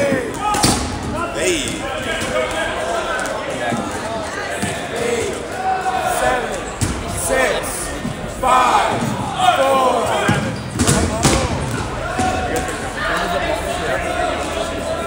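Dodgeballs being thrown and striking the gym floor and players, several sharp smacks and bounces, the loudest a little under a second in and about eleven seconds in, amid players and spectators shouting.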